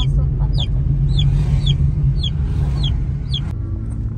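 Steady low road rumble inside a moving car's cabin, with a short high chirp that falls in pitch and repeats about twice a second. The rumble changes abruptly shortly before the end.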